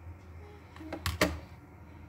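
Two quick sharp clicks close together about a second in, over a steady low hum.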